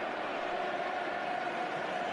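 Steady stadium crowd noise from football fans in the stands, a continuous even wash of many voices.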